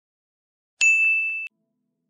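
A single high, bright ding of a notification-bell sound effect, the chime for clicking the subscribe animation's bell icon, starting about a second in, ringing for under a second and cutting off abruptly.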